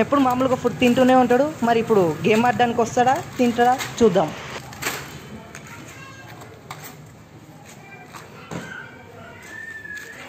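A person's voice speaking for about the first four seconds, then a quieter stretch with a few light knocks and two short high chirps near the end.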